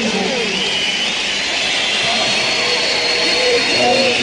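Large arena crowd cheering, screaming and whistling, with piercing whistles and shrieks above a dense roar of voices and no band playing.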